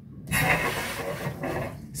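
Newly installed outdoor shower turned on: water comes out of the shower head with a sudden loud hiss about a third of a second in, then keeps running steadily.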